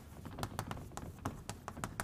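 Chalk writing on a blackboard: a quick, irregular run of small taps and scratches as the letters are formed, several a second.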